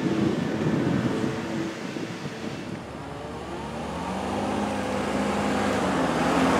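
Bentley Bentayga SUV driving up, its engine note rising in pitch and getting louder over the last couple of seconds.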